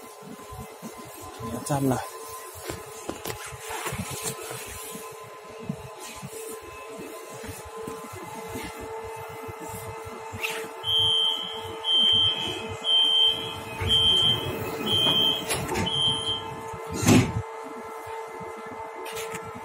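Metro train's door-closing warning: six high electronic beeps, about one a second, over the carriage's steady hum, followed near the end by a loud thump.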